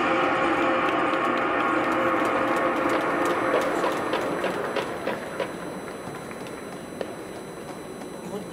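Music over a stadium public-address system: a sustained chord that fades away from about four seconds in. Scattered sharp clicks come as it dies down.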